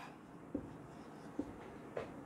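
Marker pen writing on a whiteboard: faint strokes with a few short taps as letters are formed.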